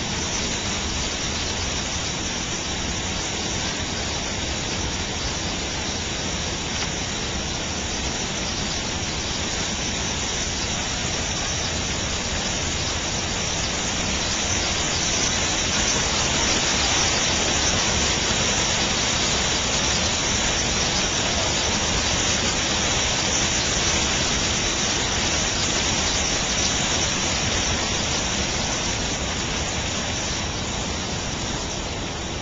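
Water spilling over the edge of a concrete low-water crossing: a steady rush that grows louder about halfway through.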